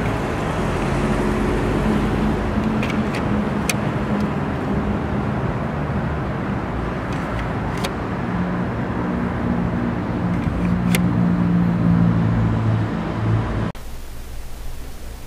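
A motor vehicle's engine hums close by over steady traffic noise, its pitch wandering slightly and stronger in the second half. A few sharp clicks come through, about three a few seconds in, one near the middle and one around eleven seconds: plastic grille insert trims snapping onto the kidney grille bars.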